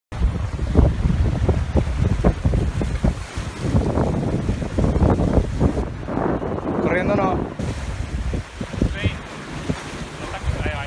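Strong wind buffeting a phone microphone, with surf washing against jetty rocks underneath; a short wavering call cuts through about seven seconds in.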